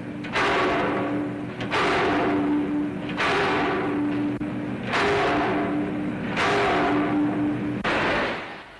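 Large power press stamping sheet metal: a heavy thud about every second and a half, each stroke followed by a steady machine hum.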